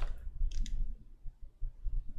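Two quick, short clicks about half a second in, over a low steady hum.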